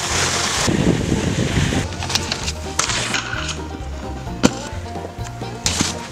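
Snowboard sliding along a wooden log rail, its base scraping over the wood for the first couple of seconds, then a few sharp knocks of the board against the log, the strongest a little past four seconds. Background music with a steady bass line runs underneath.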